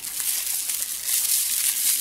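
Plastic bubble wrap crinkling continuously as hands handle and unwrap a small nail polish bottle.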